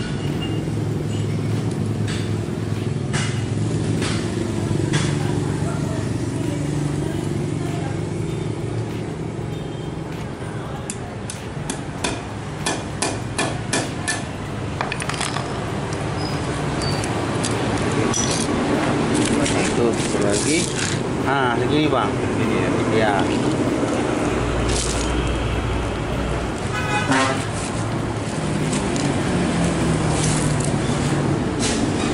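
Metal clicks and clinks of a worn motorcycle roller chain being handled at a steel bench vise, with a dense run of sharp clicks in the middle. A steady background hum of traffic runs behind it.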